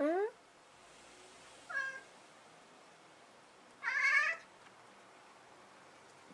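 Domestic cat meowing three short times, a quick rising 'nya' near the start, another about two seconds in and a louder, longer one about four seconds in, calls made at an insect it has spotted on the window screen.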